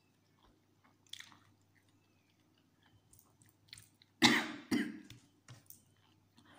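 A person chewing Samyang spicy instant noodles with soft wet mouth sounds, then two loud coughs about half a second apart a little after four seconds in, brought on by the heat of the very spicy noodles.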